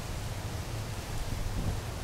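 Steady outdoor background noise: a low rumble with an even hiss over it.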